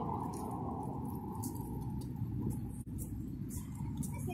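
Outdoor street ambience: a steady low rumble with light, irregular clicks from a person and a dog walking on a concrete sidewalk.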